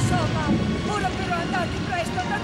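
Several voices crying out at once, overlapping, over a steady low rumble.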